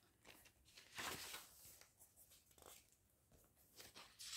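Faint rustling of paper pages being handled and leafed through, a few short soft scrapes, the clearest about a second in.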